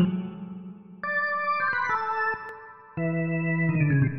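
Electronic jazz organ playing held chords in an improvisation. A new chord comes in about a second in and another near three seconds, each sounding steadily and then dying away before the next.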